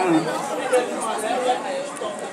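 Several men chatting over one another in a group, just after a held sung note trails off at the start.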